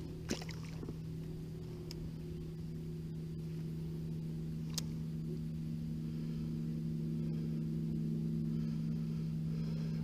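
A steady, low engine hum that holds one pitch and grows slowly louder, with a faint click about five seconds in.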